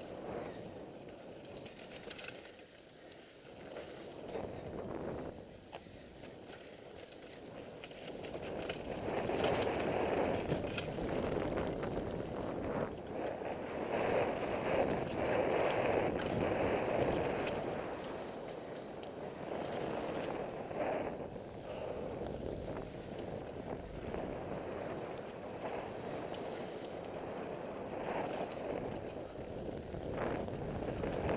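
Mountain bike riding down a rocky dirt trail: knobby tyres rolling and crunching over roots and stones, with the bike rattling over the bumps. It grows louder from about eight seconds in as the speed picks up.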